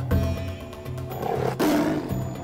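A Bengal tiger's short roar near the end, over steady background music.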